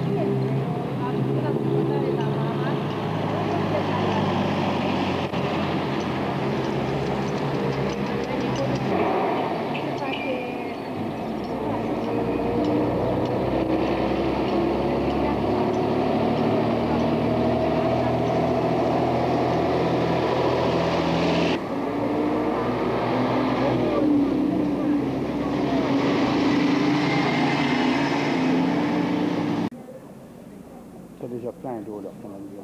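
Motor vehicle engines running, their pitch drifting slowly up and down, with the sound changing abruptly a few times.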